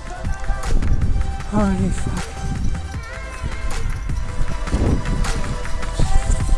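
Background music with held tones, and a short wordless vocal sound about a second and a half in.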